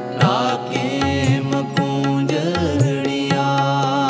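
Sikh kirtan: reed-organ chords held steady on harmonium, with tabla strokes and the bass drum's sliding low tones keeping a rhythm. A voice sings a drawn-out, ornamented phrase near the start and again briefly midway.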